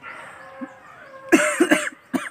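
A man breaking down in sobs: after a quiet start, a loud burst of choked, catching breaths a little past halfway.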